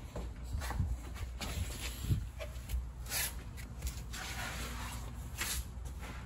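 Footsteps and shuffling on a concrete floor with rustling handling noise, several short scuffs standing out about one and a half, three and five and a half seconds in.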